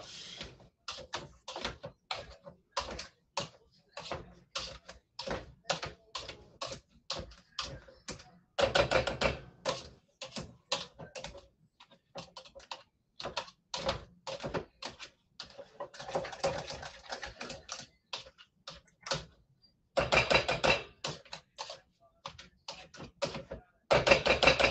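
Hand masher mashing boiled sweet potatoes with butter in a saucepan: an irregular run of knocks and taps against the pot, several a second, with denser bursts of strokes in a few places.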